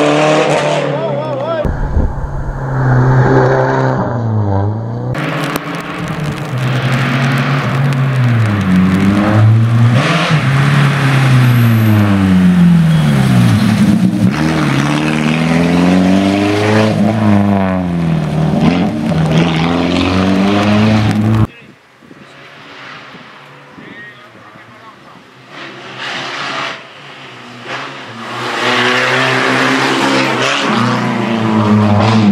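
Peugeot 306 XSi rally car's four-cylinder engine revving hard, its pitch climbing and falling again and again as it shifts gears and lifts off for hairpins. About two-thirds of the way through, the sound drops abruptly to a faint, distant engine, which grows louder again near the end.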